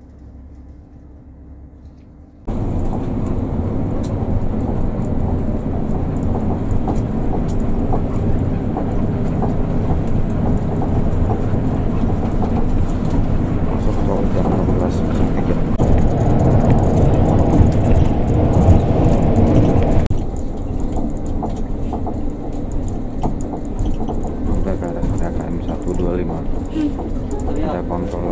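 Cabin noise of a Hino RK-chassis coach under way: steady, loud engine and road rumble. It starts suddenly about two and a half seconds in after a quieter low hum, swells louder for a few seconds past the middle, then eases back.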